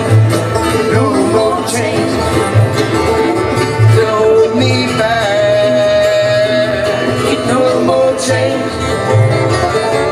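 Live bluegrass band playing: banjo, mandolin, acoustic guitar and upright bass over a steady plucked bass beat, with a long held note about halfway through.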